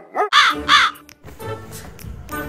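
Crow cawing: about three short, harsh calls in the first second, each rising and falling in pitch, then a quiet background.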